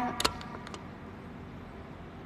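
A woman's word trailing off, then a few sharp clicks of a phone being handled and adjusted, followed by steady low background noise.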